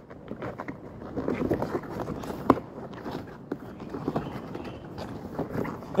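Handling noise of a Soviet PBF gas mask's rubber facepiece being pried and stretched to work the EO-19E filter out: scattered clicks, rubs and rustles, with one sharper click about halfway through.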